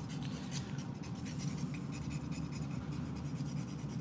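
Soft foam buffer block rubbed in small strokes along the free edge of a fingernail to smooth it after filing, giving a light scratchy rasp over a steady low hum.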